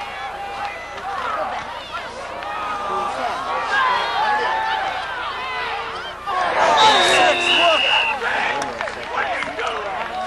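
Many overlapping spectators' voices calling out at a football game during a conversion kick, swelling louder about six seconds in. A steady, high whistle sounds for about a second and a half around seven seconds in.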